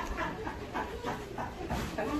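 A man's quiet, breathy laughter in short repeated pulses, softer than the talk around it.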